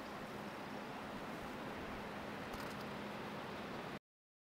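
Faint steady background hiss with a low hum underneath: outdoor microphone ambience with no distinct event, cutting off abruptly at the end.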